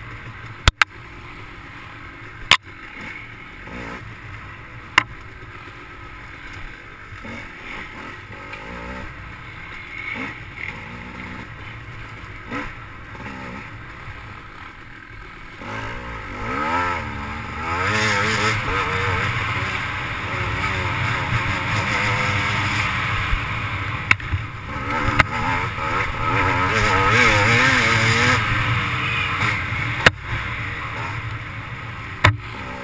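GasGas dirt bike engine running at low revs for about the first half, with a few sharp knocks in the first five seconds, then revving up and down repeatedly and much louder through the second half as the bike is ridden along a wooded trail.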